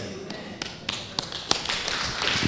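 Scattered, irregular sharp taps, several a second, over faint room noise: a few people beginning to clap after the benediction's 'Amen'.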